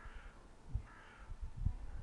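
Two faint, hoarse bird calls about a second apart, with a few low thumps on the microphone in the second half.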